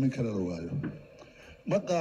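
A man giving a speech in Somali, pausing briefly about halfway through before carrying on.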